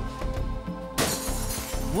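Crash of a pottery cooking pot smashing, about a second in and lasting most of a second, over steady background music.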